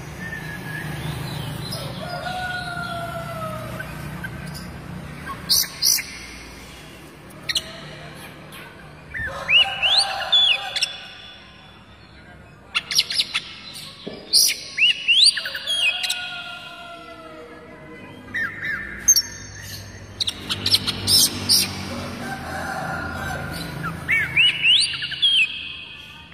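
Oriental magpie-robin (white-breasted kacer) singing in repeated loud bursts every few seconds, sharp high notes mixed with rising whistled phrases.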